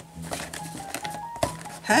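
Fingers prying and scraping at the sealed top flap of a cardboard cereal box, giving a few soft clicks and scrapes, while the stubborn flap resists opening. Quiet background music plays throughout, and a voice exclaims near the end.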